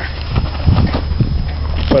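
Handling noise from a camera moving over a body armor vest: fabric rubbing with a few dull thumps, about one every half second, over a steady low rumble.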